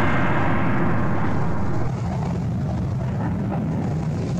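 Chengdu J-10 fighter's jet engine noise during a display flight, a loud steady rush that drops somewhat in level about two seconds in.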